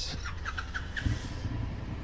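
Motorcycle engines idling with a steady low rumble that swells a little about a second in. A quick run of about five short, high chirps comes in the first second.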